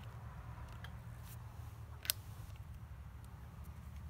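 A single sharp click about halfway through from the brake lever's lock on an Alinker walking bike as the lever is worked, with a few fainter ticks before it. A steady low rumble runs underneath.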